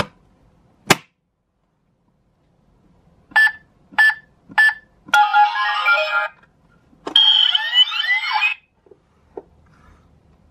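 Doraemon-themed electronic coin bank's keypad: a click, then three short beeps as buttons are pressed, followed by a short electronic tune and a second electronic jingle with sliding tones.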